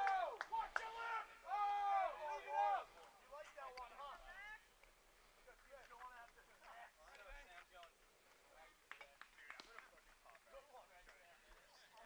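Faint, distant voices calling out on a baseball field for the first few seconds, some of them drawn out like shouts. After that it is near quiet, with a few faint clicks.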